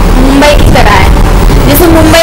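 A man and a woman talking, over a steady low hum.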